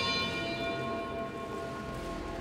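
Background music: a bell-like chime ringing out, its several steady tones fading slowly, the higher ones dying away first.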